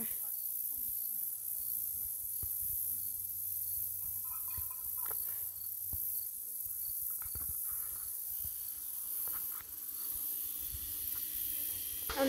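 Steady high-pitched chorus of late-summer insects such as crickets, with a faint chirp repeating at an even pace and a few soft low bumps.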